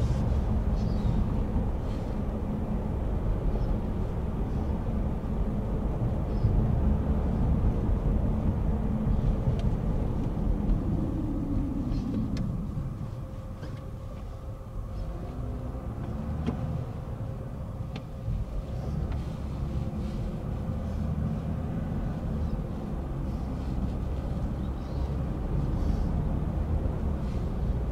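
Road and engine noise inside the cabin of a moving Toyota Crown sedan: a steady low rumble. About halfway through a tone falls as the car slows, and the noise stays quieter for a few seconds before it picks up again.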